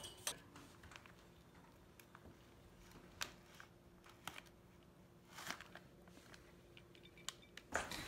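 Quiet, scattered clicks and light taps of a spoon and a crisp taco shell being handled on a plate, over a faint steady hum.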